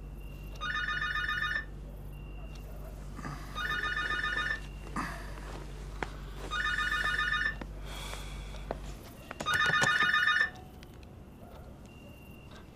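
Home telephone ringing with an electronic trilling ring: four rings of about a second each, roughly three seconds apart.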